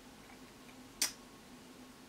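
A single short, sharp click about halfway through, over a faint steady hum of room tone.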